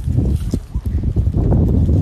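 Cut Australian pine branches rustling and knocking as they are dragged through scrub and over sand, in loud, uneven strokes.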